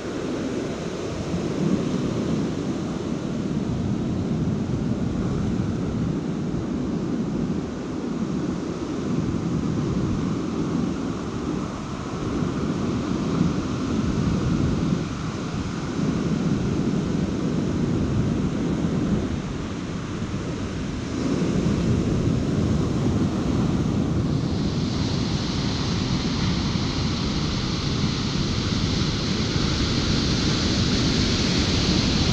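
Ocean surf breaking on a sandy beach: a continuous wash that swells and eases with each wave. A brighter hiss of foaming water joins in about two-thirds of the way through.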